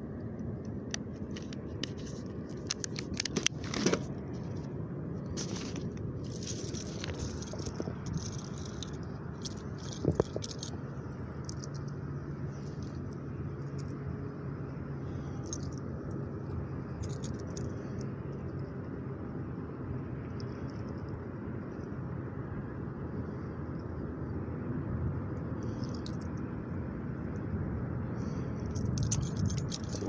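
Fishing tackle being handled: rustling of a tackle bag and bait packaging with small metal jangles and clicks as a soft-plastic swimbait trailer is rigged onto a bladed jig, busiest in the first ten seconds with two sharp clicks, over a steady low background noise.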